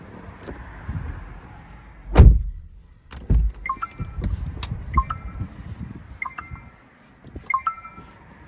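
A heavy thump about two seconds in and another about a second later, then the car's dashboard chime sounding four times, about once every second and a quarter, each a short electronic tone of two or three notes.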